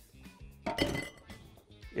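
A brief clink and clatter of kitchenware against a glass mixing bowl, about two-thirds of a second in, as batter is ladled out to fill muffin moulds. Faint background music runs underneath.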